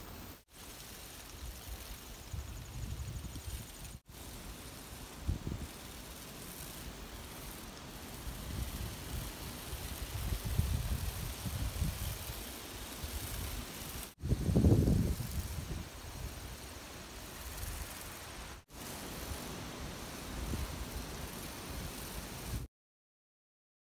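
Wind buffeting an outdoor microphone: a low, uneven rumble over a faint hiss, with a louder gust about fourteen and a half seconds in and a few brief dropouts.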